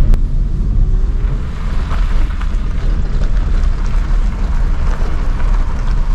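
A car being driven, heard from inside the cabin: a steady low rumble of engine and road noise, with a single sharp click just after the start.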